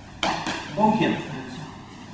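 Brief speech: a couple of short spoken sounds, the first starting sharply just after the start.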